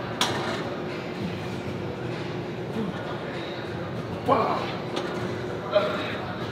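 Gym background: indistinct voices over a steady hum, with a sharp knock just after the start.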